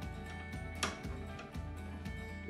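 Soft background music of steady held tones, with one small sharp click a little under a second in as the phase wire is pushed into the light switch's terminal.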